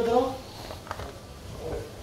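A man's voice trails off at the very start. After that there is only low, even room background, with one faint click about a second in.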